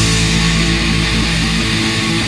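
Epic doom metal band playing at full volume: distorted electric guitars and bass holding heavy, low chords over drums.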